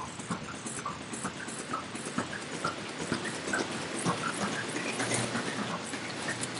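Mouth music: a rapid, irregular run of tongue clicks and small pops, each pop with its own pitch, over a faint watery hiss.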